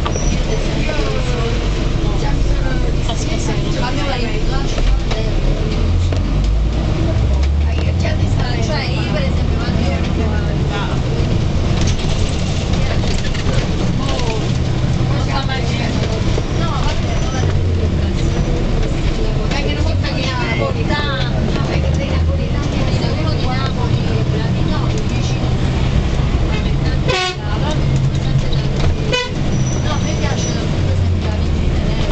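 Bus engine running under load on a winding road, heard from inside the cabin, with short horn toots and passengers chatting faintly in the background.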